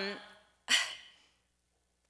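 A woman's single breathy sigh into a podium microphone, lasting about half a second, just under a second in, right after the end of a spoken "um".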